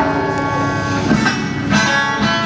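Live acoustic music: acoustic guitar and djembe playing, with a long held sung note.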